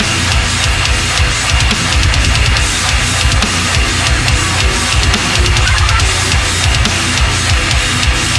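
Heavy metal band music with no vocals: a distorted electric guitar riff over bass guitar and a sampled drum kit with rapid kick-drum hits.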